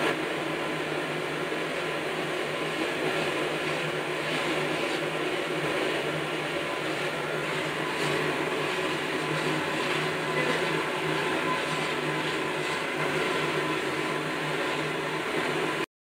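Milk boiling hard in a large iron karahi over a stove burner: a steady rushing noise that cuts off suddenly near the end.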